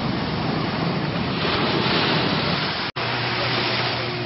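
Surf washing onto a beach with wind rushing over the microphone, a steady noise throughout. It breaks off for an instant just before three seconds in and resumes with a faint steady low hum underneath.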